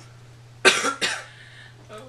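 A person coughs twice in quick succession, starting about two-thirds of a second in. The first cough is loud and sharp, the second weaker, over a faint steady low hum.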